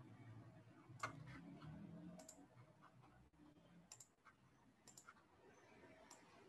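Faint computer mouse clicks over quiet room tone: a handful of sharp single and double clicks spaced about a second apart.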